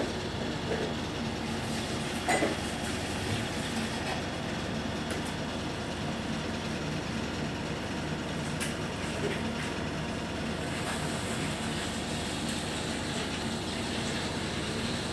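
Steady low background rumble with a faint hum, and a brief knock about two seconds in.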